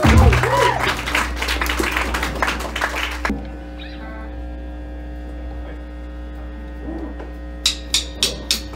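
Live band of electric guitar, bass and drums playing a loud passage that stops abruptly about three seconds in, leaving amplifier hum and ringing tones. Near the end come a few sharp, evenly spaced clicks, like drumsticks counting the band back in.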